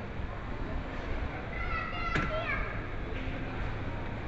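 Busy hypermarket ambience: a steady low hum with a child's high-pitched voice calling out briefly about two seconds in, sliding down at the end, and a single sharp click in the middle of it.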